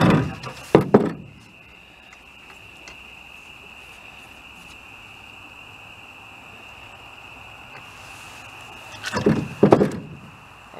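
Knocks and clatter of a bowfishing arrow and fish being handled in a small boat: a burst in the first second and another near the end. A steady high-pitched night chorus runs underneath throughout.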